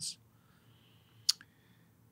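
A single short, sharp click about a second in, with a fainter click just after it, in an otherwise quiet pause between speech.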